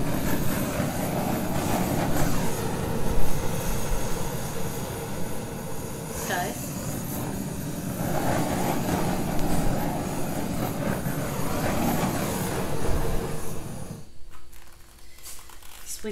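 Handheld butane torch flame running steadily as it is passed over wet poured paint; it cuts off about two seconds before the end.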